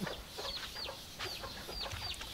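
Young chicks peeping: a string of short, high-pitched, falling peeps, about two or three a second.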